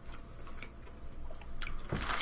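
Faint chewing of a breaded fried chicken chip, heard as a few soft, scattered mouth clicks.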